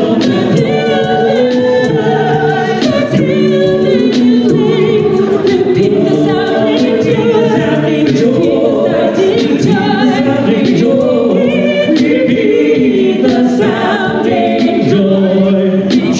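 A small a cappella vocal group of men and a woman singing together in harmony into microphones, without instruments.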